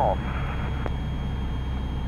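Single piston engine of a Piper PA-28 light aircraft running steadily in cruise, heard as a low drone in the cockpit, with one short click about a second in.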